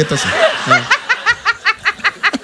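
Laughter: a quick run of short 'ha-ha-ha' pulses, about six a second, over a comedy-club audience laughing.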